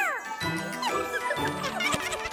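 Cartoon soundtrack: tinkling, chime-like sound effects over light music, with many short quick sliding high notes.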